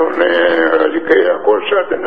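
A man's voice chanting in long, drawn-out held notes, loud and close to the microphone.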